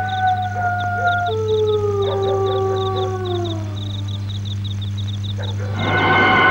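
A dog howling: one long howl that holds its pitch, then slides down and fades out about four seconds in.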